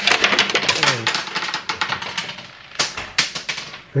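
A Byrna pepper-ball launcher's magazine spring suddenly shoots the loaded .68-calibre kinetic balls out all at once, and the hard balls clatter and bounce across the table and case in a quick rattle of clicks that thins out over a second or so. A few more scattered clicks follow near the end. The magazine ejects its balls this easily when it is pressed.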